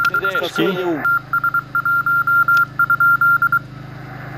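Morse code (CW) from a 50 MHz amateur radio transceiver: a single high-pitched tone keyed in short and long beeps, dots and dashes, stopping about three and a half seconds in.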